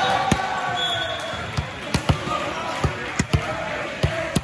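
Volleyballs thudding on a hard gym floor: about seven irregular bounces, a few of them close together near the middle and end, over the voices of players and spectators.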